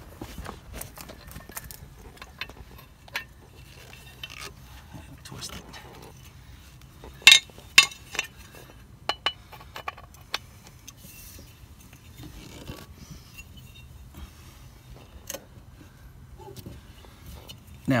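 Metal clinks and light rattling from a scissor jack and its steel crank handle being set under the car and fitted together, with two sharp, louder clinks a little past the middle.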